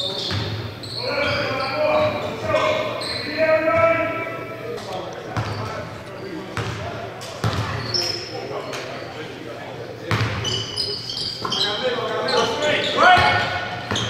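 Basketballs bouncing on a hardwood gym floor with repeated sharp knocks, mixed with players' shouts and calls, echoing in a large gym.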